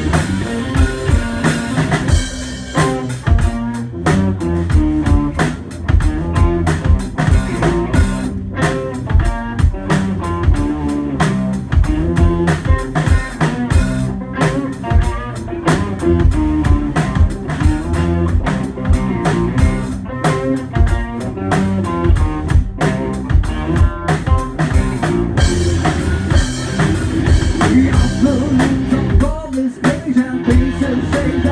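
Live rock duo: an electric guitar through a Sovtek amplifier and a drum kit playing a heavy riff together. The music is loud and steady, with a regular drum beat.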